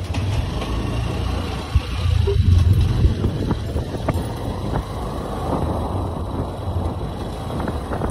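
Honda motorcycle engine running as the bike rides off along the street, getting louder about two seconds in as it picks up speed, over a steady rush of road and wind noise.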